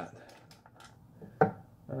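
A single sharp knock about one and a half seconds in, from kitchenware handled on a counter, with a few faint clicks before it.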